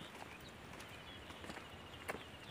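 Faint footsteps on a dirt-and-stone path, soft scattered clicks, with faint high bird-like chirps and a thin high trill starting about a second in.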